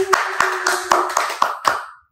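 Three people clapping their hands, in quick uneven claps that grow fainter and stop near the end.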